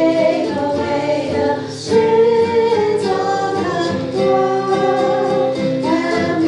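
Sung hymn: voices singing in long held notes, with a brief break just before two seconds in.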